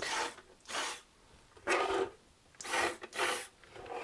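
Small hobby servos driving the 3D-printed plastic eyelids of a robot Spider-Man head open and shut: several short whirring bursts, each under half a second, with short pauses between them.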